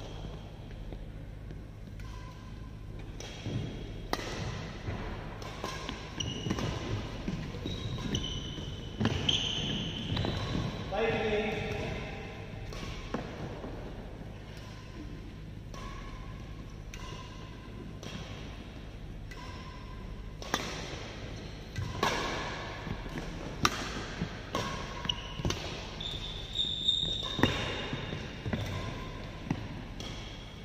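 Badminton rally: sharp racket-on-shuttlecock hits at irregular intervals, coming in two spells of play with a lull between them, with brief voices in the hall.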